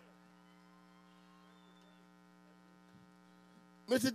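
Low, steady electrical mains hum from the stage's amplifiers and PA speakers while the band is silent. A man's loud voice cuts in at the very end.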